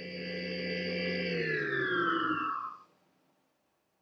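A cartoon sound effect: an electronic, theremin-like tone that holds steady for about a second, then slides down in pitch for about a second and a half and stops, a 'sad' falling cue.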